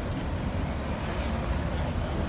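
Busy outdoor town-square ambience: a steady low rumble under an even hiss, with no distinct voices or single events standing out.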